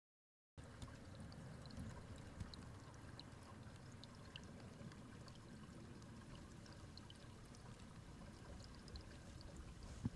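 Faint trickle of running water, an even wash with scattered small high ticks, beginning abruptly about half a second in after complete silence.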